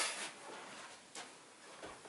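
A pause in a man's talk: quiet room tone, with the tail of his voice at the very start and two faint ticks later on.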